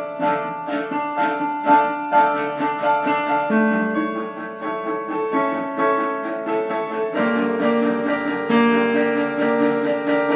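Piano and cello playing together: a quick run of struck notes throughout, with longer held low notes coming in about three and a half seconds in and again near seven.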